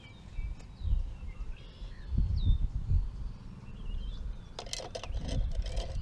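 Outdoor birds chirping with short, sliding high calls, over irregular low rumbling gusts of wind on the microphone; a few sharp clicks near the end.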